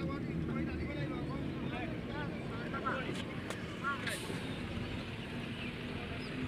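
Outdoor ambience of distant, indistinct voices over a steady low rumble, with many short high chirps scattered through it and a few faint clicks about three to four seconds in.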